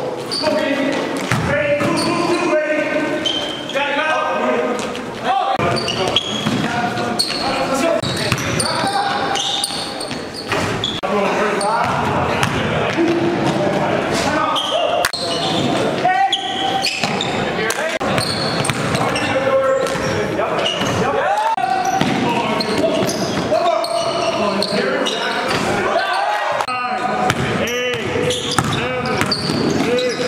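Basketball dribbled and bouncing on a gym floor during play, with many short thuds, under players' voices calling out across the hall.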